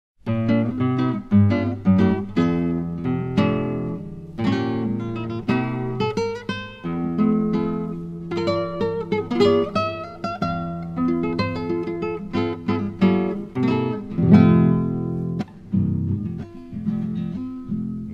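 Classical guitar playing an instrumental introduction: picked melody notes and chords over bass notes, each note ringing and dying away.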